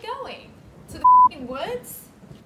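Censor bleep: one short, loud, steady beep laid over a word of a woman's speech, a little after a second in.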